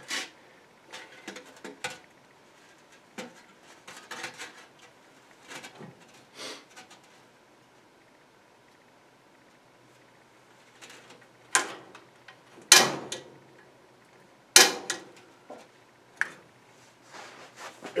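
Scattered light clicks and knocks from handling the pilot controls of a gas log fireplace, with three louder, sharp clicks about two-thirds of the way through.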